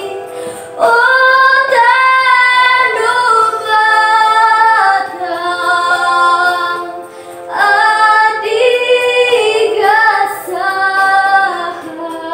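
A girl singing a Batak-language song over a backing track, in long held notes. There are two sung phrases with a short breath in between, a little past the middle.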